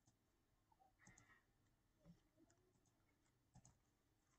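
Near silence with a few faint computer mouse clicks: a couple about a second in, one near two seconds and one more near the end.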